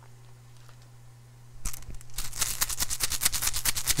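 Rune stones being shaken together, a rapid clatter of stone clicking on stone that starts a little under two seconds in and keeps going, over a low steady hum.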